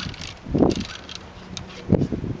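Ramrod of a flintlock musket scraping and knocking in the barrel as a cartridge is rammed down, with a few short clinks and a sharper knock near the end.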